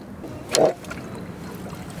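A spinning reel being cranked as a rod loads up on a hooked fish, over a steady low hum and light wind hiss from the boat. About half a second in there is one short, loud sound.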